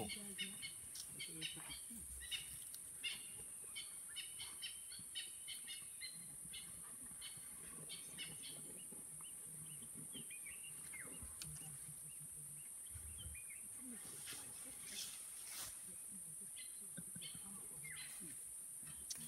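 Faint bush ambience: a steady high-pitched insect drone with frequent short bird chirps and calls over it.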